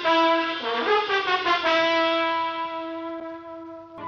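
Radio-drama brass music bridge: a short phrase of moving brass chords, then a long held chord that fades away near the end.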